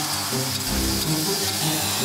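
Angle grinder grinding steel, a harsh steady hiss that starts suddenly, over background music.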